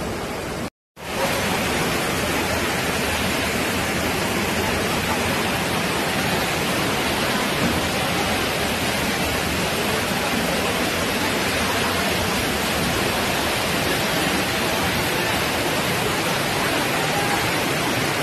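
Steady, unchanging rushing noise of torrential rain and floodwater, broken by a brief cut to silence about a second in.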